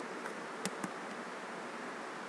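Two sharp computer keyboard key clicks about a fifth of a second apart, over a steady background hiss.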